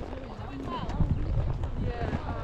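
Hooves of a walking horse clopping on a gravel track.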